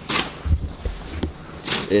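Snow shovel scraping and throwing snow twice, once just after the start and again near the end, with a deep low rumble in between.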